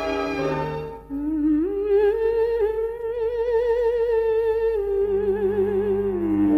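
A female singer humming a wordless 'mm' with wide vibrato over soft orchestral accompaniment. She comes in about a second in, rises to a long held note, then steps down near the end.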